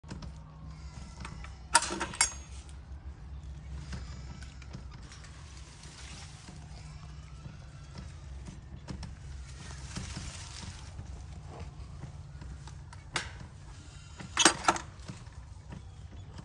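Metal gate latch on a tubular steel farm gate clanking: two sharp metallic clacks about two seconds in as it is worked open, then a few more clacks near the end as the latch catches shut.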